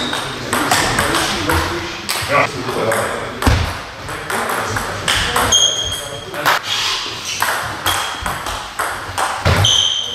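Table tennis ball struck by the bats and bouncing on the table in rallies: a run of sharp clicks, several with a short high ping, with pauses between points.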